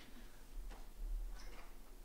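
A quiet pause in a lecture room: a low steady hum with two faint, soft clicks a little under a second apart.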